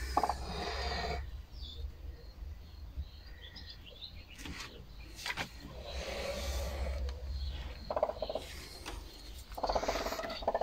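Faint poultry sounds in a barn: low background rumble with a few soft clicks, and a short bird call about eight seconds in.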